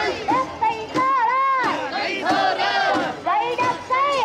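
Crowd of mikoshi bearers shouting a chant together as they carry the portable shrine, many voices in short, repeated rising-and-falling calls.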